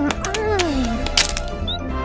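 Cartoon eggshell cracking as a chick hatches: a few sharp cracks about a second in, over light background music. Before it, a character's voice gives a falling hum.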